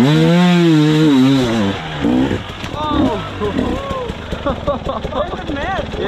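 Dirt bike engine revving in long rising-and-falling swells for about two seconds, then dropping to a rough idle. Shouts and laughter come over it in the second half.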